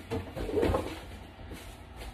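A short, muffled voice-like sound in the first second, then quieter.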